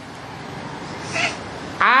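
A pause in a man's speech, with only faint room hiss and a brief faint sound about a second in; near the end his voice comes back in loudly, its pitch rising sharply.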